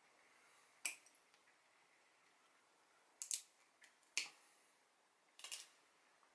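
Small pliers cracking at a plum pit's hard husk: a handful of short, sharp cracks and clicks, one a little under a second in and the rest bunched between about three and five and a half seconds in, over near silence.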